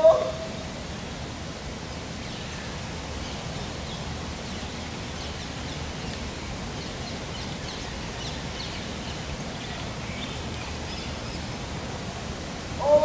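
Outdoor ambience: a steady noise bed with faint, scattered bird chirps through the middle and later part.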